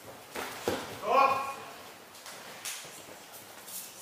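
Two sharp knocks from a sparring exchange with training weapons, then a loud, short shout rising in pitch about a second in. A few fainter knocks follow, with the hall's echo.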